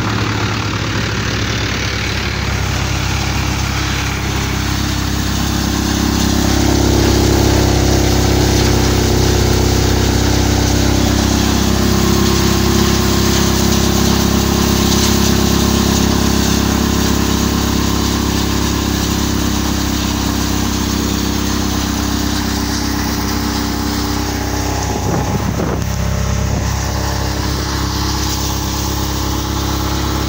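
Tractor engine driving a cutter thresher that is threshing soybean: a loud, steady machine drone with engine hum, getting a little louder about six seconds in.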